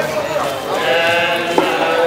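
A group of men chanting hymns together in unison, many voices held on long wavering notes. A brief sharp click cuts in about one and a half seconds in.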